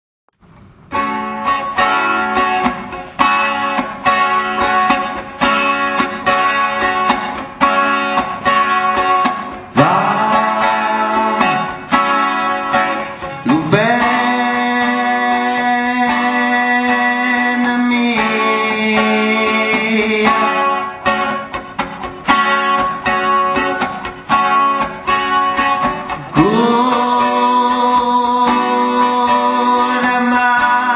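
Acoustic guitar strummed in a steady rhythm, joined about ten seconds in by a male voice singing long held notes that slide up into pitch.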